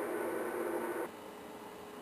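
Faint steady hiss of static from a Yaesu FT-950 HF transceiver tuned to an empty 80-meter voice frequency, with no signals heard: the band is dead in the daytime. The hiss cuts off about a second in, leaving quieter room tone.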